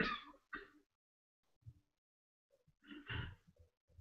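Near silence on gated video-call audio, broken about three seconds in by one short, low vocal noise from a man, brief as a throat-clear.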